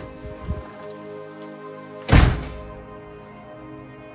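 A front door slamming shut with one heavy thud about two seconds in, over soft background music.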